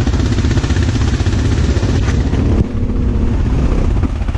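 ATV engines running close by: a steady, loud, low pulsing rumble. It eases slightly about two and a half seconds in.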